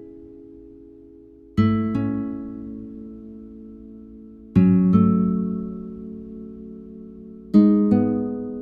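Sampled nylon-string guitar (Omnisphere preset) playing three chords about three seconds apart, each struck as the root and fifth together with the third entering a beat later, each left to ring and fade before the next.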